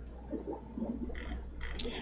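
Faint clicking and ratcheting of a computer mouse as a file is downloaded and opened, with two short hissy bursts in the second half, over a low steady electrical hum.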